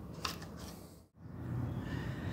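Paintbrush strokes applying paint remover to a steel bicycle frame, with a light knock about a quarter second in. The sound cuts out briefly about a second in and gives way to a steady low hum.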